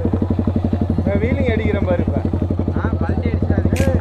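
Yamaha 155 cc single-cylinder motorcycle engine idling with a rapid, even pulse. A voice talks briefly over it.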